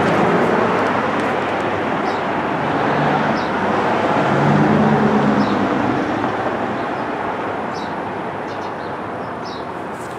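Street traffic: a motor vehicle passing close by, swelling to its loudest about halfway through and then fading away. Faint bird chirps come every second or two.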